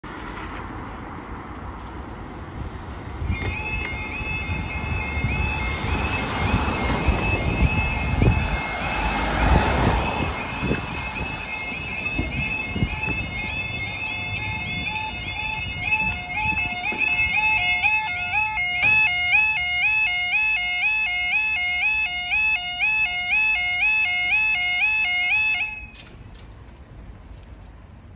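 Level crossing yodel alarm warbling in a rapid two-tone pattern, starting a few seconds in, with a second, lower-pitched alarm joining past the halfway point. Both cut off suddenly near the end, when the barriers are fully down. Road traffic passes in the first half, loudest as a vehicle goes by about a third of the way in.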